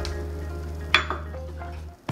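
A single sharp clink of kitchenware knocking against a blender jar about a second in, over quiet steady background music.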